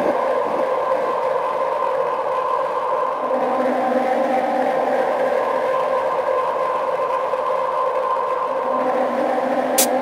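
Drum and bass breakdown with the drums dropped out: a steady, sustained synth drone of several held mid-range tones over a light hiss. A few sharp clicks come in right at the end.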